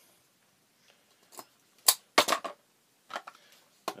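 Hard plastic wrestling action figure clicking and clacking as its spring-loaded rocker action is pushed down and snaps back, with knocks as it is set on the table. About six short sharp clicks, the loudest around two seconds in.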